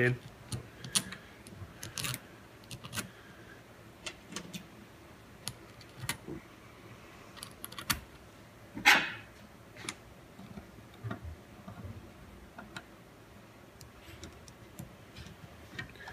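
Small metal screws and carburettor parts clicking and tapping as screws are started by hand into a Tillotson HW27A carburettor's top cover, with one louder knock about nine seconds in.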